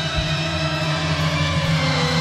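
Live rock band music in an instrumental stretch, with held guitar notes over a steady bass and no singing.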